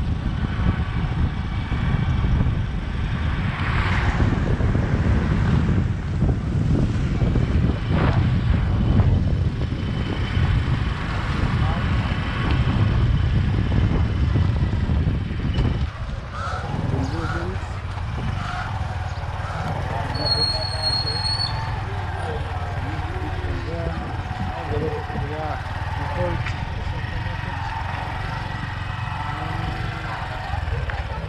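Boda boda motorcycle taxi on the move: engine running under heavy wind rumble on the microphone. About halfway through the rumble drops to a quieter, steadier engine sound, with people's voices in the background.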